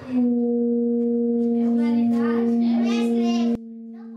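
Gas-heated metal Rijke tubes singing: one loud, steady low tone with overtones, made by the burner's heat driving the air in the tubes. Children's voices call out over it, and about three and a half seconds in the tone drops suddenly to a much quieter level.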